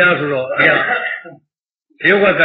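A man's voice speaking in a recorded sermon. It stops about a second and a half in, leaving a short stretch of dead silence before speech resumes.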